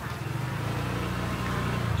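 A steady low mechanical hum, like a small engine or motor, that grows slightly louder toward the end.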